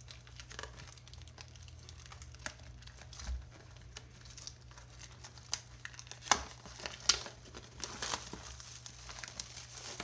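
Clear plastic shrink-wrap being torn and peeled off a cardboard booster box: crinkling with scattered sharp crackles, loudest from about halfway through.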